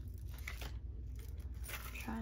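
Handling noise from small packaging and items being turned over in the hands: two short bursts of crinkling and scraping, one about half a second in and one near the end, over a low steady hum.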